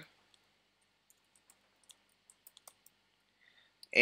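Faint keystrokes on a computer keyboard: a short run of quiet, sharp clicks about halfway through, otherwise near silence.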